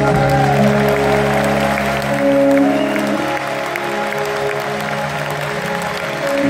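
A large audience applauding and cheering over a live rock band that holds long sustained chords.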